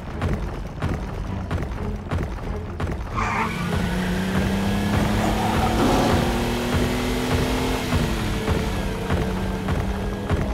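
An off-road vehicle's engine running as it drives off fast over dirt, under background music with a steady beat. Partway in, a low drone sets in, climbs slowly in pitch and drops near the end.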